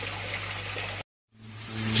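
Pond water trickling steadily over a low steady hum. It cuts off suddenly about halfway through, and after a brief silence music fades in near the end.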